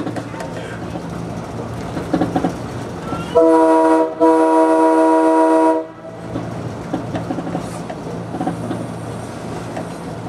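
Budd RDC railcar's air horn, heard from inside the cab, sounding a short blast and then a longer one of about a second and a half, a chord of several notes. Underneath runs the railcar's steady low hum and the clatter of wheels on the rails.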